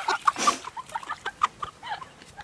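Chicken clucking: a quick series of short clucks, with a few light clicks in between.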